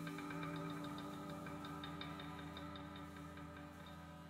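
Soft background music of held tones with a light, regular ticking beat, fading out.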